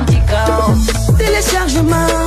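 A music track with a beat, in an Afro-pop/hip-hop style, with a deep bass that slides down in pitch again and again under a melodic line.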